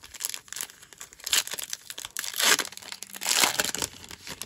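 The foil wrapper of a Topps baseball card pack crinkling and tearing as it is pulled open by hand, with louder crackles about a second in, midway and near the end.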